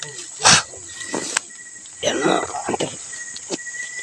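Night insects keep up a steady high chirring while someone brushes through grass and leaves. There is a short loud rustle about half a second in, a few small clicks, and a brief muffled vocal sound about two seconds in.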